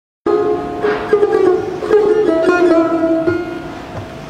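Persian tar played solo in Mokhalef of Segah: a run of plucked notes struck with the plectrum, starting suddenly just after the start, each ringing on and the playing fading toward the end.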